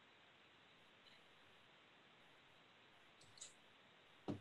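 Near silence: faint room hiss on an online meeting feed, with one faint click near the end.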